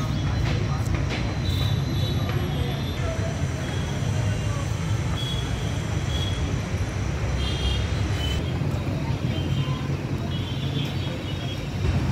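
Outdoor street ambience: a steady low rumble of road traffic with indistinct voices and short high chirps here and there.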